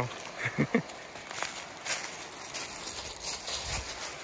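Footsteps crunching and rustling through dry fallen leaves on a forest trail at a quick walking pace, with a brief grunt-like voice sound about half a second in.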